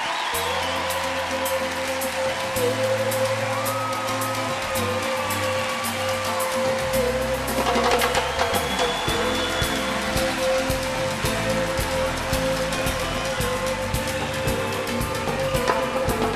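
Live show band playing an instrumental intro: a long held note over a bass line that moves every second or two, with steady cymbal taps on top.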